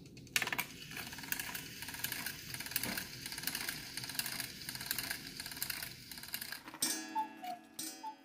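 Weight-driven Black Forest cuckoo clock movement ticking steadily, its escapement giving a regular beat of roughly two to three ticks a second. Near the end a short tone with descending two-note figures comes in.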